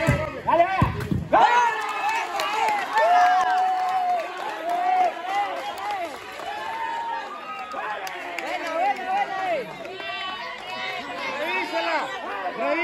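Many overlapping voices of players and onlookers shouting and calling out, a few of them held as long cries. Low thumps sound in the first second and a half.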